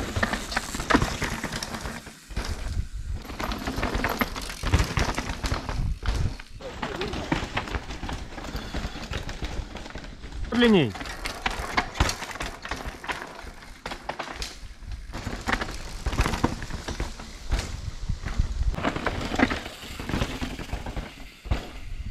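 Downhill mountain bike running over a rocky dirt trail: a constant clatter of tyres on rock and roots, with frequent sharp knocks and rattles from the bike over the bumps, and wind rushing on the microphone. A short falling cry is heard about halfway through.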